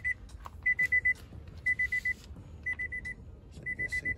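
A car's warning chime beeping in quick groups of four, about one group a second, sounding while the driver's door stands open, with some handling rustle.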